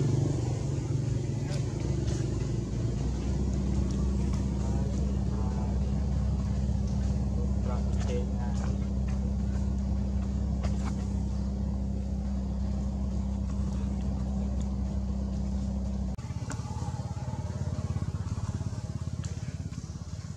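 A steady low engine hum, which drops and changes character about sixteen seconds in, with a few faint clicks over it.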